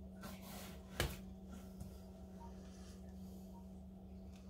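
A painting turntable being stopped after a spin: one sharp knock about a second in, over faint room tone with a steady low hum.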